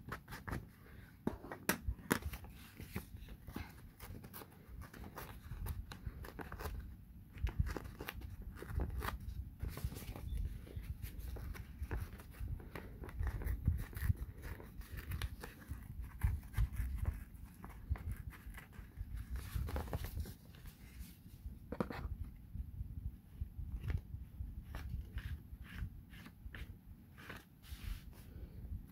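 Book-page paper being torn by hand: a string of short, crisp rips and crackles, with rustling and handling of the paper throughout.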